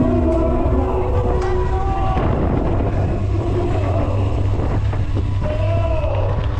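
Steady low wind rumble on the microphone of a camera riding on a moving mountain bike, with a loudspeaker voice and music faintly behind it.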